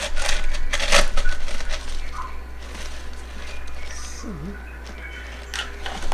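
Hoya leaves and stems rustling and crackling as the potted plant is handled, with a dense run of clicks in the first second or so and scattered ones after.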